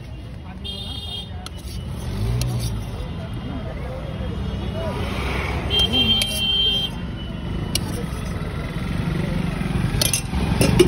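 Street traffic with vehicle engines and background voices, a few sharp clicks of a metal spoon against a steel bowl, and a brief high tone about six seconds in.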